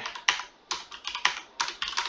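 Computer keyboard typing: a quick run of separate keystrokes, about seven or eight in two seconds.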